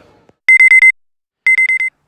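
Digital alarm clock beeping for wake-up: two loud bursts of four quick, high beeps at a steady pitch, about a second apart.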